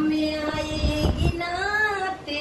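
A high female voice singing a Hindi song line: one long held note, then a phrase that rises and falls, with a couple of low thuds underneath about a second in.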